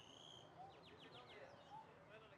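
Faint songbird calls: a short whistled note, then a quick run of about five falling notes about a second in. Faint distant voices can be heard lower down.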